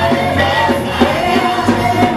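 Live gospel music: a vocal group singing held notes into microphones over a band with a steady drum beat, about one hit every half second or so.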